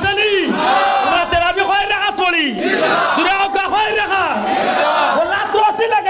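A man's loud voice through microphones and a PA, shouted or chanted in a sing-song way, with the pitch rising and falling in repeated arches.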